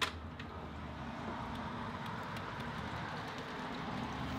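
A door clicks open at the start, then steady outdoor background noise with a low rumble of distant road traffic.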